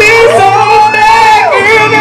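A singing voice holding one long note over a hip-hop backing track, gliding up at the start and falling away after about a second and a half.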